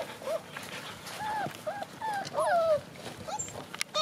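F1B labradoodle puppies whining and yipping: a run of short, high cries that bend in pitch, about one every half second, with two overlapping near the middle.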